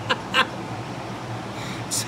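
A man laughing in a couple of short bursts, then a steady low hum with a brief hiss near the end.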